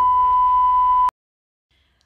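Steady single-pitch beep of a TV colour-bar test tone, loud and unchanging, which cuts off suddenly about a second in.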